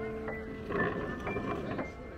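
Background piano music: single notes struck slowly, each ringing and fading before the next. A short rush of noise sits under the notes for about a second in the middle.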